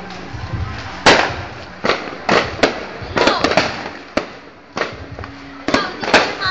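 A Judas' belt, a string of firecrackers, going off: about a dozen sharp bangs at uneven intervals, some in quick clusters, the loudest about a second in.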